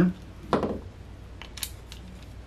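A hand-turned countersink bit cutting into a quarter-inch Lexan plastic router base plate: a short scrape about half a second in, then a few quick scraping clicks about a second and a half in, as the countersink is brought flush.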